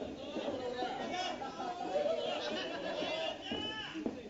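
Several voices talking and calling out over one another: chatter with no single clear speaker.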